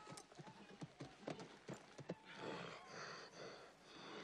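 A horse's hooves clopping irregularly on the ground for the first two seconds, followed by a horse whinnying, running about a second and a half.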